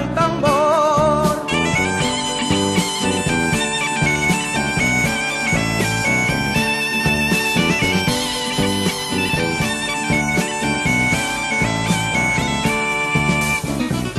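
Background music: an instrumental break in a folk-pop song about the gaita. A bagpipe melody plays over its steady drone, with bass and drums underneath, just after the last sung line ends.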